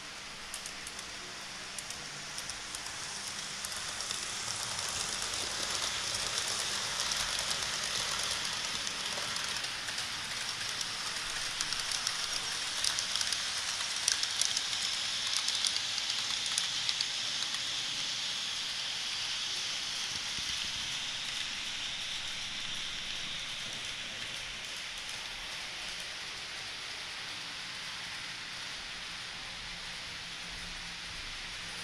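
Model train wheels rolling on the rails, a steady hissing rush with faint fine clicks that swells as a train passes close, loudest about halfway, then slowly fades.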